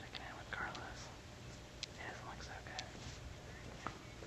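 Faint whispered voices over a steady hiss, with a few light clicks.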